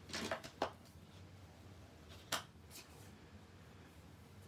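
Small plastic ink pad being handled and set down on a craft mat: a few soft knocks in the first second, then a single sharp click a little after two seconds in.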